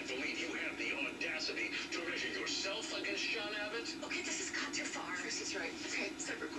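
A television playing quietly in the background: faint, distant speech with some music.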